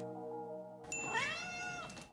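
Background music fades out. About a second in comes a click with a ringing chime, then a single cat meow that rises and falls in pitch.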